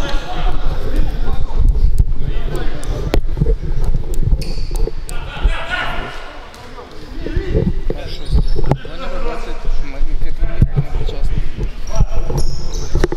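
Futsal ball kicked and bouncing on a wooden sports-hall floor: scattered sharp thuds in a large hall, with players' voices calling out. There is a quieter lull about halfway through, while the goalkeeper holds the ball.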